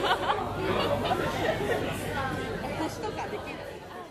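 Several people chatting, with laughter; the voices fade away toward the end.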